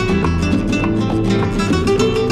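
Flamenco guitar playing a rumba, with quick plucked note runs over sustained low notes.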